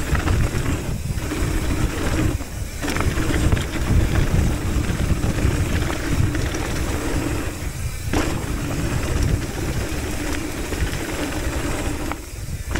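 Wind rushing over the camera microphone and tyres rolling over loose gravel as a hardtail mountain bike descends a rocky dirt trail at speed, with short lulls about a second, two and a half and eight seconds in.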